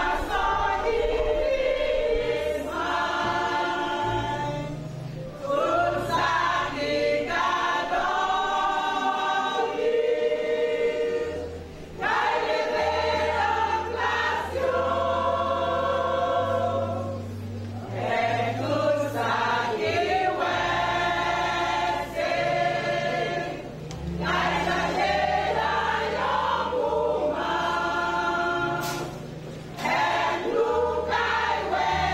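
A church choir, mostly women's voices, singing a song in long held phrases with short breaks between them. Steady low bass notes sound underneath and step to a new pitch every couple of seconds.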